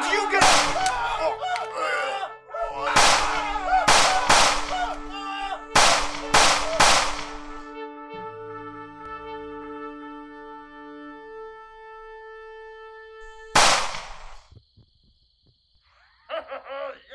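Gunshots: one just after the start, three in quick succession about three to four and a half seconds in, three more about six to seven seconds in, and a last one near fourteen seconds, each with a short ringing tail. Held music notes run under the shots and fade out after about eleven seconds.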